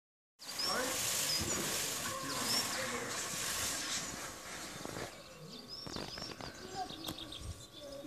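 Small birds chirping repeatedly in short high calls over a loud rustling hiss that fades about halfway through, followed by a few sharp clicks.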